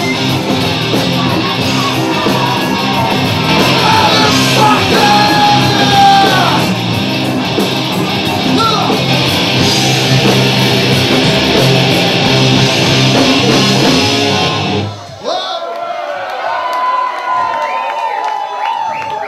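Live rock band with electric guitars and shouted vocals playing loud; the song stops abruptly about 15 seconds in, followed by shouts and cheers from the audience.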